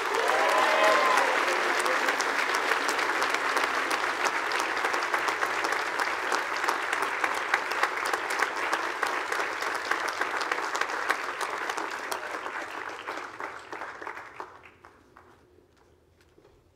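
Audience applauding: sustained clapping from a large crowd that tapers off and dies away about fourteen to fifteen seconds in.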